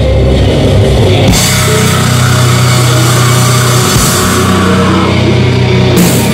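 Metalcore band playing live and loud: heavy distorted guitars, bass and drum kit. About a second in, a denser section kicks in with crashing cymbals.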